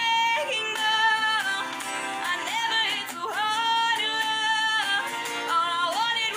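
A woman singing a pop ballad in long, held notes that slide from pitch to pitch, with acoustic guitar underneath.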